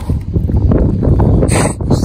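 Plastic toy shovel digging into beach sand right next to the phone's microphone, a dense gritty scraping and crunching of sand. About a second and a half in comes a sharper, brighter burst as sand gets onto the phone itself.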